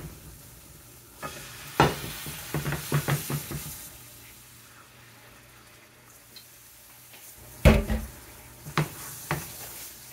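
Water poured into a hot skillet of browned flour-and-oil gravy, hissing and sizzling, while a metal spoon scrapes and knocks against the pan as the gravy is stirred. A few sharp spoon knocks on the pan about eight seconds in are the loudest sounds.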